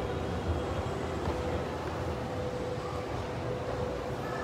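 Steady low rumble with a constant mid-pitched hum from mall machinery: the moving walkway and escalators.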